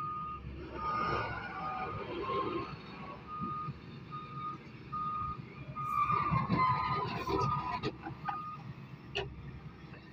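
Doosan wheeled excavator's warning alarm beeping repeatedly at one pitch, over the rumble of its engine running. A louder burst of machine and rock noise comes about six to seven seconds in.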